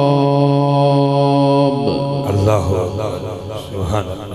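A male Qur'an reciter holds a long, steady melodic note of tilawat, which ends a little under two seconds in. A looser jumble of voices follows.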